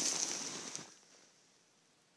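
Soft rustling that fades out within the first second, followed by near silence.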